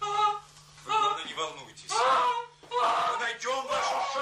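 A person's voice crying out loudly in several wordless bursts, each about a second long, with pitch that slides up and down. A faint steady low hum runs underneath.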